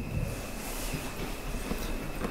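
Quiet room tone of a conference hall during a pause, with faint scattered shuffles and a faint steady high-pitched whine.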